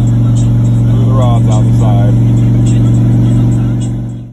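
Turbocharged LS V8 in a Chevy S10 pickup cruising on the highway, a steady low engine and exhaust drone heard inside the cab. The sound fades out near the end.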